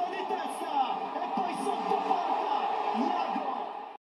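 Football stadium crowd: a dense, steady wash of many voices at once, holding level and cutting off at the very end.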